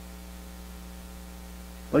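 Steady electrical mains hum with a faint buzz of higher overtones, unchanging throughout. A man's voice comes in right at the end.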